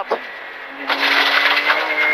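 Porsche 911 GT3 rally car's flat-six engine heard from inside the cabin, holding steady revs at first, with a louder noisy rush building over it from about a second in.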